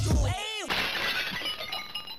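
Outro music cuts off, followed by a quick swooping sound effect and then a sudden bright crash with ringing tones that fade away, like a shattering sound effect.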